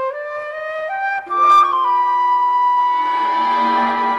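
Background music: a melody moving in steps of held notes, joined about a second in by lower sustained notes underneath.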